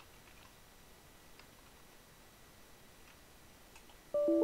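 Near silence with a handful of faint, spread-out clicks of computer keyboard keys and a mouse button as a user name is typed and a dialog is confirmed.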